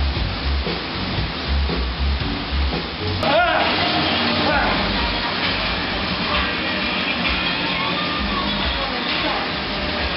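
Schwinn Airdyne fan bikes whirring as riders sprint: a steady rush of air from their fan wheels, under background music. A voice calls out briefly about three seconds in.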